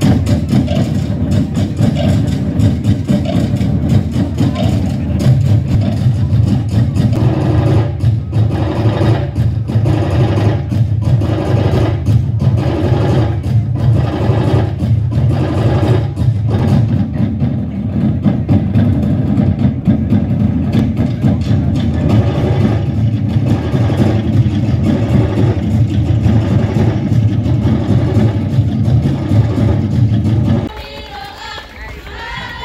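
Tahitian drum ensemble, to'ere slit-log drums with pahu drums, playing a fast, dense, unbroken rhythm to accompany ʻōteʻa dancing. A heavier beat comes about once a second in the middle stretch.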